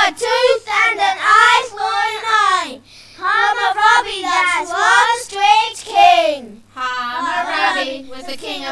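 Young children singing a song without instruments, phrase after phrase, with brief breaths between lines.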